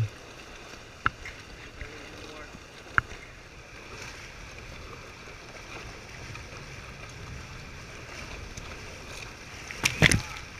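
Steady rush of water and wind past a Prindle 18-2 catamaran sailing fast, with a sharp click about a second in and another about three seconds in. Near the end, spray dashes against the camera in a few loud hits.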